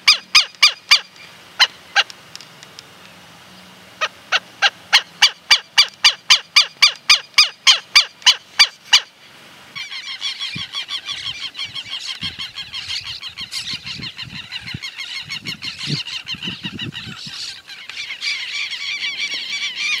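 A European starling singing, a run of sharp, evenly spaced clicks about three a second. About halfway through this gives way to a group of southern lapwings calling noisily, their calls overlapping in a continuous chorus.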